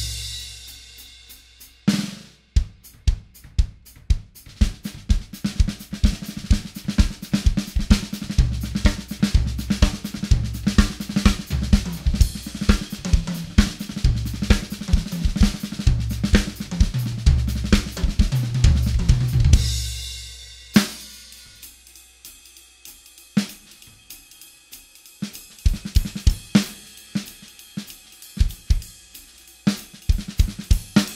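DW acoustic drum kit with Zultan cymbals played as a full groove of kick, snare, toms and cymbals. The snare is damped with Moongel pads. The kick is tuned about as low as it will go and struck with a hard beater on a Kevlar pad, for more attack. About twenty seconds in the busy groove ends and rings out, and a sparser, lighter pattern follows.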